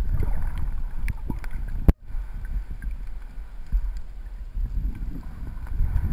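Muffled underwater water noise picked up by a submerged camera: a steady low rumble with scattered small clicks, and a sharp click just before two seconds in followed by a brief cutout.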